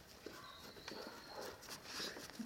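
Faint footsteps of a large dog crunching and scuffing through snow as it pushes a ball along, with scattered soft ticks.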